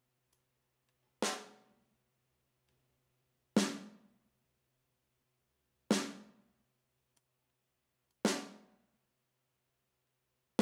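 A snare drum sample played back solo: four single hits about two and a half seconds apart, each ringing out briefly. A low-cut EQ filter is being raised on it, so the later hits carry less low end.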